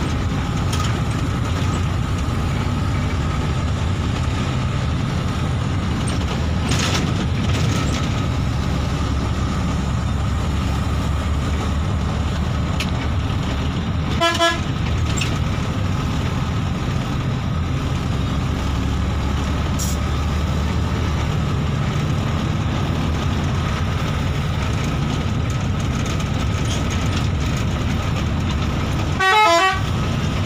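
Bus engine running steadily while the bus is under way, heard from inside the cabin, with a short horn toot about halfway through and a longer horn blast near the end.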